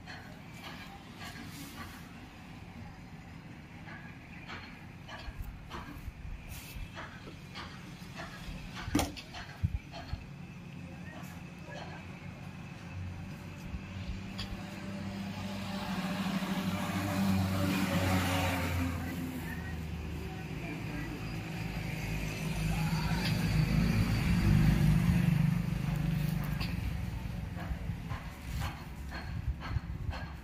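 Road traffic passing: a vehicle's sound swells and fades a little past the middle, then a lower engine rumble builds and eases off near the end.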